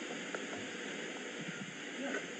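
Steady background hiss with no distinct event in it.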